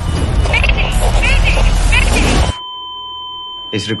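Loud roar of an airliner in heavy turbulence, with a deep rumble and voices in it. About two and a half seconds in it cuts off suddenly into a steady high electronic tone, which holds on.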